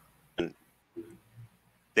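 A pause between a man's spoken phrases, broken by one short mouth click about half a second in and a faint low murmur about a second in.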